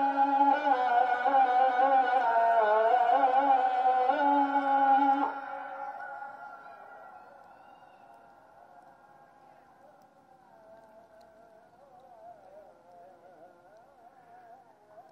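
Ikindi (afternoon) adhan sung by a muezzin and sent from a central system to the mosque loudspeakers, heard over the town. A long ornamented held phrase ends about five seconds in and dies away in a long echo, with faint wavering traces of the voice until near the end.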